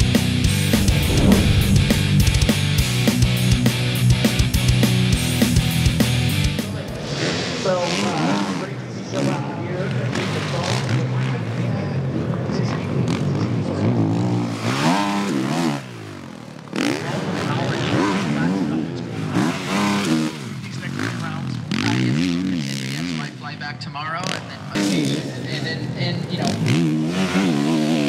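Rock music plays for the first six or so seconds and then cuts out. After that, several 450-class motocross bikes are heard revving and passing on the track, their engine pitch rising and falling again and again as they accelerate and shut off over the jumps.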